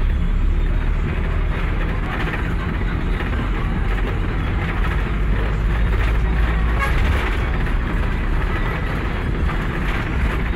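Steady low engine and road rumble heard from inside a moving vehicle's cabin, with road noise over the top.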